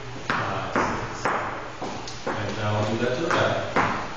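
A man's voice speaking in a short, evenly paced run of words, with sharp starts about twice a second.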